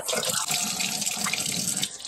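Kitchen faucet running steadily into a stainless steel sink, the stream splashing off a man's face and hand as he rinses his burning mouth.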